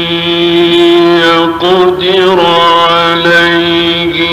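A male Qur'an reciter chanting in the drawn-out melodic mujawwad style, holding long vowels on steady notes with slow ornamented turns of pitch and two short breaks for breath. The sound is narrow and dull at the top, as on an old recording.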